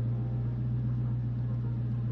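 Steady low hum heard inside the cabin of a 2019 Dodge Charger Hellcat, typical of its supercharged V8 idling.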